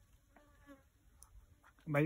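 Mostly quiet, with a faint, brief buzzing about half a second in. A voice starts calling out just before the end.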